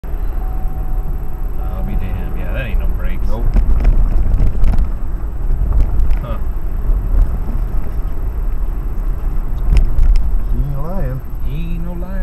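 Car rolling slowly, heard from inside the cabin: a steady low rumble with a few sharp clicks or knocks, a noise the driver has ruled out as the brakes.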